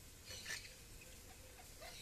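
Faint, brief parrot calls from maritacas, one about half a second in and another near the end, over a quiet background hiss: the birds beginning to announce their departure.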